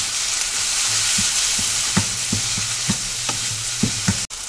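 Onion and spice masala sizzling in butter in a nonstick pan while a wooden spatula stirs it, the spatula knocking and scraping against the pan about every half second.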